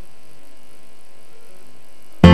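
Steady low-level hum and hiss with no music or voices: the quiet lead-in of a music video before the song starts.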